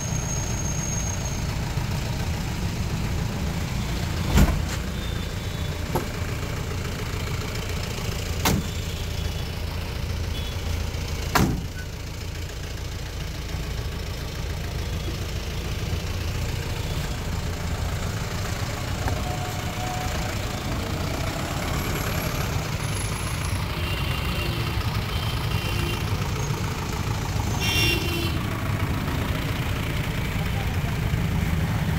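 Steady low rumble of road traffic, with four sharp knocks in the first half and a few short high toots, like vehicle horns, in the second half.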